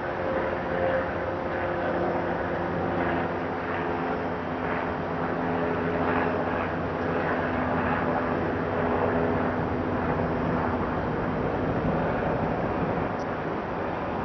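Steady engine drone with a low hum in several tones, over a wash of outdoor city noise.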